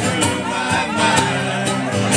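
Live acoustic band music between sung lines: strummed guitar chords, about two strums a second, over sustained instrumental notes.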